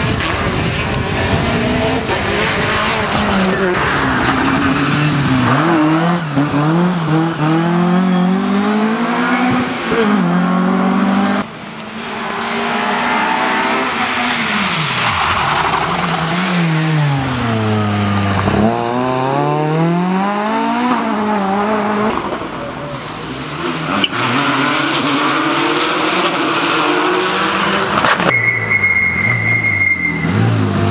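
Rally cars at full speed on a wet tarmac stage, one after another, their engines revving hard. The pitch climbs and drops with each gear change and sweeps up then down as each car passes. A steady high tone sounds near the end.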